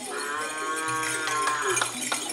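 One long moo from Madura cattle, held for about a second and a half and dipping slightly in pitch as it ends.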